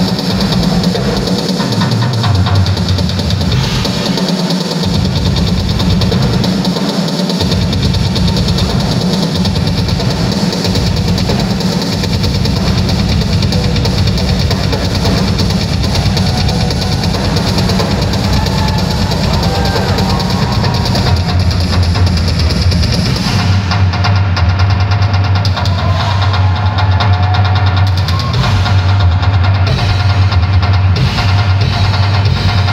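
Rock drum kit played solo live, with bass drum, toms and cymbals going continuously, heard from within the crowd in a large hall.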